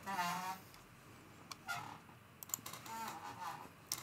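Quiet stretch with a few soft wordless vocal sounds from a woman, one just at the start and fainter ones later, and a scatter of light clicks about two and a half seconds in.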